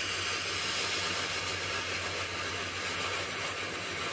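Steam iron giving off a steady, continuous hiss of steam from its soleplate as the steam button is pressed. The tank holds a 50-50 mix of water and white vinegar, and the steam is descaling the iron, blowing limescale gunk out of the soleplate holes.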